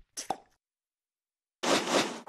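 Cartoon sound effects from an animated logo intro: a short pop just after the start, about a second of silence, then a burst of rushing noise near the end.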